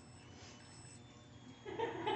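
Quiet room tone, then near the end a thin electronic melody of steady beeping notes starts up, from the musical lotus-flower birthday candle on the cake.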